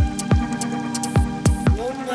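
Bass-heavy electronic music from a DJ mix: about five deep kick drums, each dropping fast in pitch, hit in an uneven pattern over a held synth chord, with light high hi-hat ticks.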